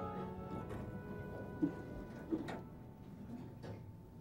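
Background drama music fading out, with two short knocks about one and a half and two and a half seconds in.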